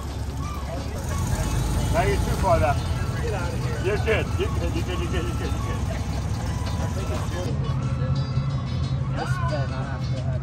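Air-cooled Volkswagen Beetle flat-four engine running at low speed as the car moves past, with voices around it. About seven and a half seconds in, the sound cuts to a steadier low hum with voices.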